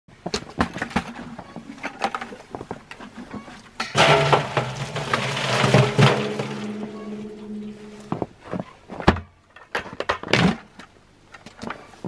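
Maple sap poured from a plastic bucket into a tall stainless steel stockpot: a splashing pour about four seconds in that develops a hollow ringing tone in the pot and ends at about eight seconds. Clunks and knocks from handling the buckets come before and after it.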